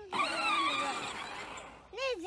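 A child's loud, high-pitched squeal, wavering in pitch, lasting about a second and a half.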